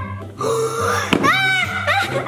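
Background music with a steady low accompaniment, under a voice making drawn-out, wordless vocal sounds, with a short click just after a second in.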